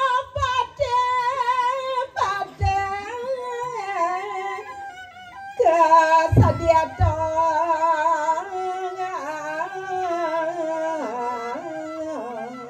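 A solo voice singing a slow traditional Balinese melody through a microphone, holding long, wavering notes that step up and down in pitch. A few short low thumps fall under it, twice in the first second, once near three seconds and twice between six and seven seconds.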